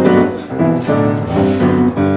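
Grand piano played live, a flowing run of notes and chords with a new note about every third of a second.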